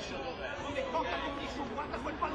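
Indistinct chatter of several voices overlapping, children's high voices among them, with no clear words.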